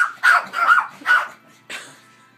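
Yorkshire terrier barking in a quick run of about five short barks, the last one fainter.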